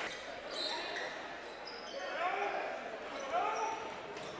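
Gymnasium sound during a high school basketball game: crowd chatter with a couple of short shouted calls, and the ball and players moving on the hardwood court.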